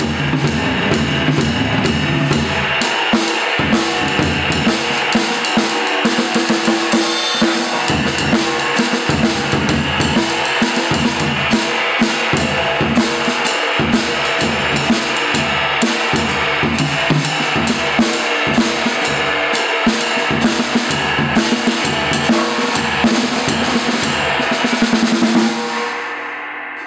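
Jazz drum kit played with sticks: rapid, dense strokes on the snare and cymbals over a constant ride-cymbal wash, stopping right at the end.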